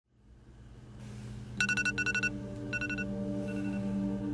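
Smartphone alarm going off: quick trilling beeps in four short bursts starting about a second and a half in, the last one fainter. Under it a low held music drone fades in from silence.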